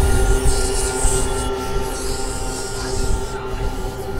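A loud, dense din: steady high squealing tones held over a low rumble and rushing noise, like metal wheels screeching on rails.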